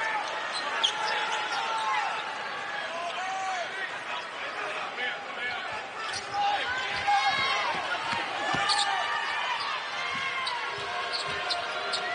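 A basketball being dribbled on a hardwood court, a run of sharp bounces, with sneakers squeaking on the floor and voices in the arena around it.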